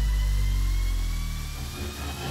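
Electronic news-graphic sound effect: a low hum with overtones that slowly slide down in pitch and a faint thin whistle rising above it, the whole fading out gradually.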